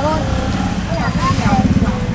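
Motorbike engine running close by, a fast low pulsing that grows stronger about a second in, under people talking.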